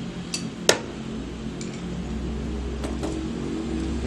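Pliers working on an E3D V6 hotend's metal heater block and throat as the throat is tightened: a few sharp metallic clicks, the loudest under a second in, over a steady low hum.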